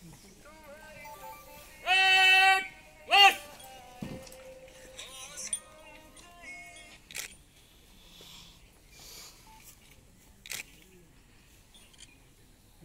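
A loud shouted parade-ground drill command: one long held call, then a short sharp word whose pitch rises and falls, over faint murmuring talk. Two sharp clicks follow later.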